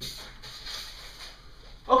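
Rustling and shuffling of objects being handled and rummaged through. Near the end a man's loud exclaimed "Okay" cuts in suddenly.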